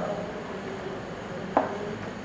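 Chalk tapping and scraping on a blackboard as figures are written, with one short, sharper sound about one and a half seconds in.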